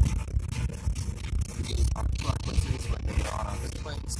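Road and engine rumble of a moving car heard from inside the cabin, with irregular rustling and scraping noises on the microphone.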